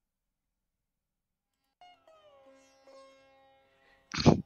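Faint sitar music coming in about two seconds in: plucked notes ringing over a steady drone, one note sliding downward in pitch.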